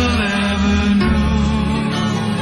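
A slow song about a grandmother plays, with long held notes over a steady bass line.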